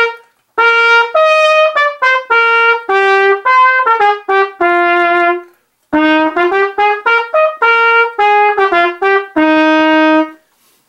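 Solo trumpet playing a 2/4 march melody, a beginner band book exercise, in separate accented notes with dotted rhythms. There is a short break about half a second in and another just after five seconds. It ends on a long held low note near the end.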